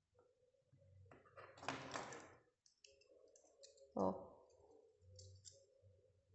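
Faint clicks and a short scraping rasp about one and a half to two seconds in, as a craft knife blade cuts through a soft eraser and presses against the paper beneath.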